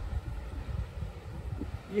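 Wind buffeting the microphone outdoors: an uneven, gusty low rumble.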